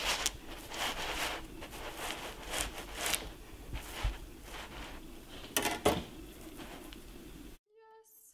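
Serrated knife sawing through a sponge cake's crust and crumb, a run of short, scratchy strokes at irregular intervals that stops abruptly shortly before the end.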